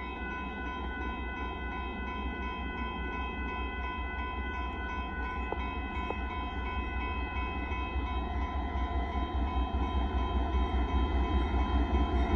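Freight train cars rolling through a road crossing, a low rumble that grows louder toward the end. A steady electronic crossing warning bell sounds over it.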